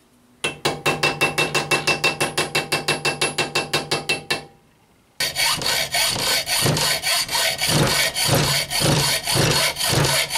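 Rapid light hammer taps on metal, about eight a second with a metallic ring, as small copper rivets are peened over. After a short pause about five seconds in, rhythmic rasping strokes on metal take over, about two a second.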